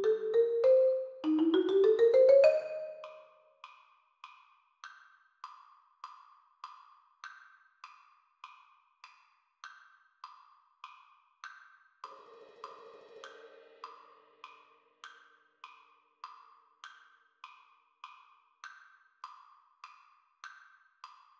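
Marimba notes ending in a quick rising run about two and a half seconds in. After that a steady click keeps the beat alone, a little under two clicks a second, with faint low held notes briefly around the middle.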